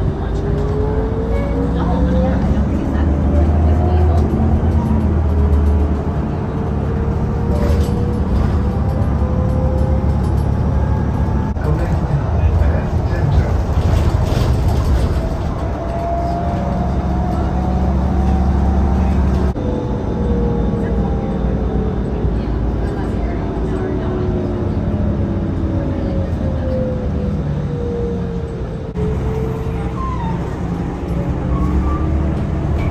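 City bus running, heard from inside: a low engine rumble under a drivetrain whine that rises slowly in pitch as the bus gathers speed and falls again as it slows, several times over.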